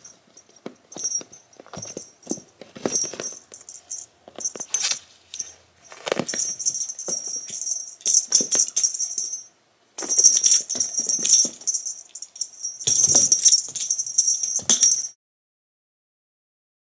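A cat's play toy jingling and rattling in bursts of a few seconds, with scuffling on carpet as a cat plays. The sound cuts off suddenly about fifteen seconds in.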